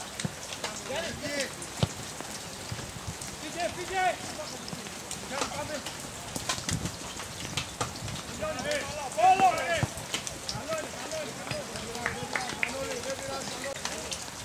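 Scattered shouts and calls from players and onlookers at a football match, heard from a distance over a steady hiss, with the loudest shout about nine seconds in. A few sharp knocks stand out now and then.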